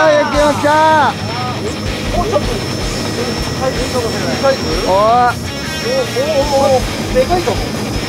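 Electric fishing reel motor winding in line under the load of a hooked fish, a steady high whine, with low boat and wind rumble beneath.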